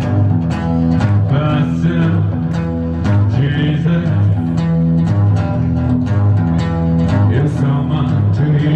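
Acoustic guitar strummed steadily in a live performance, with a man's voice singing over it at moments.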